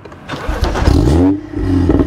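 Stage 2-tuned BMW M135i turbocharged straight-six started from behind the car with the exhaust valves closed: a brief crank, the engine catches about half a second in and flares up in revs, then drops back to a steady idle after about a second and a half.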